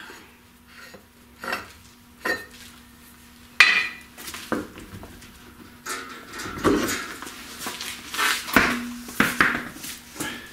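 Metal clanks, clinks and knocks as a wire wheel's knock-off spinner is unscrewed and the wheel is worked off its splined hub. A few separate clanks, the loudest about three and a half seconds in, are followed after about six seconds by a busier run of knocks and rattles as the wheel comes off.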